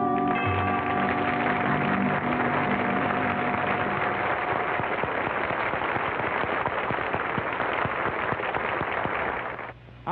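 Studio audience applauding as the song's final held note and closing chord die away over the first few seconds. The clapping goes on steadily and fades out about a second before the end.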